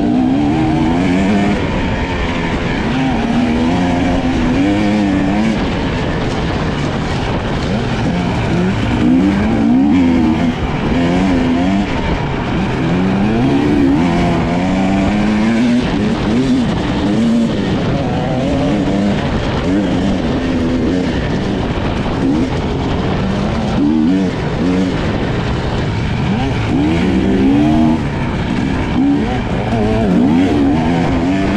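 Husqvarna dirt bike engine revving hard off-road. Its pitch rises and falls over and over as the throttle is opened and closed.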